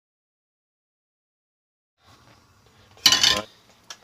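A brief, loud clatter of metal kitchenware about three seconds in, after two seconds of silence and some faint handling noise, followed by a single sharp click just before the end.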